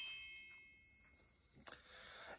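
Metal triangle ringing out after a single strike, a cluster of high steady tones fading away by about a second and a half in.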